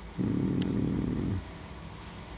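A man's low, wordless hum of hesitation, a drawn-out 'mmm' lasting about a second that drops in pitch as it trails off.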